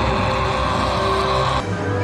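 Cartoon soundtrack: music under a loud rushing noise effect that begins suddenly and cuts off about one and a half seconds in.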